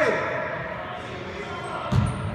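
Echoing gym noise with one sharp bounce of a basketball on the hardwood court near the end.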